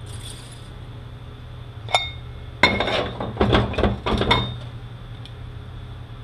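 Metal 5R55E transmission parts (clutch drums and pistons) being handled and set down on the workbench. There is one sharp, ringing clink about two seconds in, then a rattling cluster of metal clinks and clanks lasting about two seconds, over a low steady hum.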